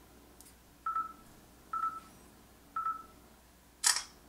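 LG G3 smartphone camera's gesture-shot countdown: three short beeps about a second apart, then the camera shutter sound near the end as the photo is taken.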